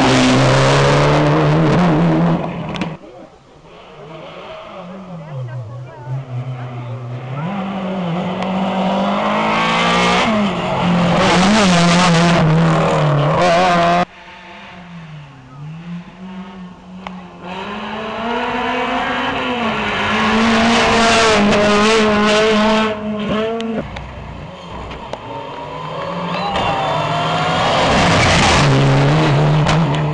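Rally cars at full throttle on a special stage, engines revving up and dropping back through gear changes as each approaches and passes close by. Several passes build to loud peaks, with the sound cutting off abruptly between some of them.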